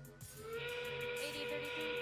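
FRC field's endgame warning sound, marking 30 seconds left in the match: a whistle-like tone that glides up about half a second in and then holds, over arena music with a steady beat.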